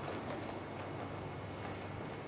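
Many overlapping hoofbeats from a group of horses moving together over the arena's dirt footing, a steady, irregular stream of soft hoof strikes.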